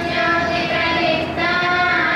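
A high singing voice holds long notes over musical accompaniment, moving to a new note a couple of times.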